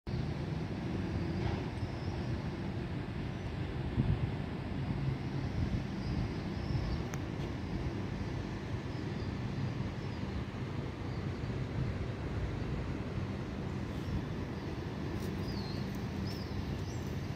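Steady low rumble of urban outdoor background noise with a low hum running through it, and a few faint high chirps about five seconds in and again near the end.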